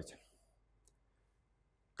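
Near silence: room tone, with one faint short click a little under a second in.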